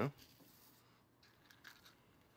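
Faint, brief rustles and scrapes of toasted bread strips being handled and packed into a small cardboard fry holder.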